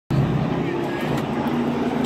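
Sportsman stock cars' engines running on the track, a steady drone with several pitches held together.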